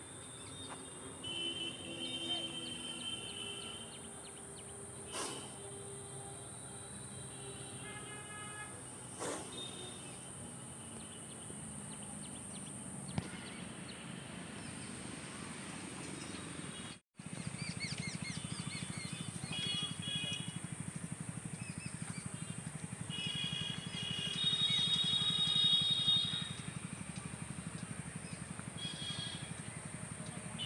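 Outdoor rural ambience with birds chirping in short, repeated high calls, over a steady high whine. There is a brief dropout about 17 seconds in; after it the low background rumble is louder.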